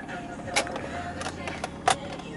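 A few light plastic clicks and knocks, about four spread over two seconds, from the car's centre-console trim and cup-holder cover being handled.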